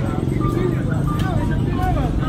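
Busy outdoor food-stall ambience: background voices over a steady low rumble.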